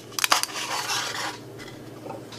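Tin foil crackling and rustling as a wooden lolly stick is pushed through a small slit in the foil over a paper cup. There are a few sharp crackles just after the start, then a softer crinkle that fades out.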